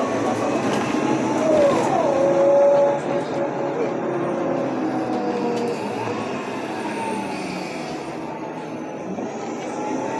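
Interior of a city bus under way: engine and drivetrain running under a steady rumble of road noise, with a whine that slides down in pitch about two seconds in and then holds, as the bus turns and pulls along.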